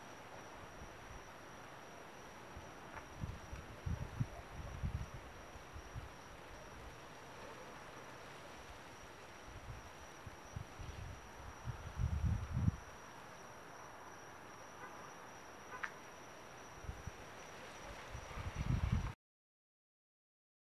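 Faint night-time background hiss with a thin, steady high tone, broken a few times by low rumbles on the camera's microphone, about four, twelve and eighteen seconds in. The sound cuts off suddenly near the end as the recording stops.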